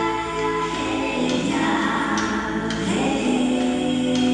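Choral music: a choir singing held, layered chords, with the notes shifting every second or so.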